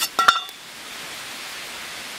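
A few sharp metallic clicks with a brief ring in the first half-second, from a metal tin of cast lead airgun slugs being handled, then a steady soft hiss of light rain.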